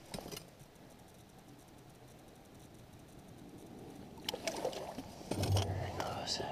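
A faint steady low hush for most of the stretch, then a few sharp clicks and rustling handling noise in the last two seconds as a cutthroat trout is lowered back into an ice-fishing hole.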